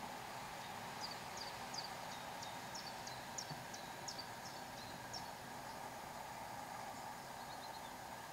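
A bird singing a run of about a dozen short, high, down-slurred notes, roughly three a second, over a steady background hiss; a brief faint trill follows near the end.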